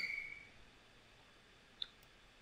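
Mostly quiet room tone, with one short computer-mouse click near the end.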